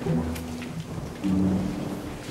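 Rain hiss with a low thunder rumble, and two low held tones of about half a second each, one just after the start and one in the second half.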